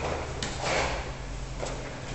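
Movement sounds of a barefoot karateka stepping and turning through the kata Pinan Nidan on dojo mats. There is a sharp snap a little under half a second in, followed by a half-second swish of the gi and of feet sliding on the mat, and a fainter tap near the end, all over a steady low hum.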